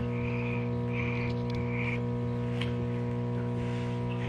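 Toy lightsaber giving a steady electronic buzzing hum, with three short higher buzzes in the first two seconds.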